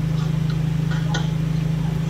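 A car engine idling, heard from inside the cabin as a steady low hum with a fine, even pulse.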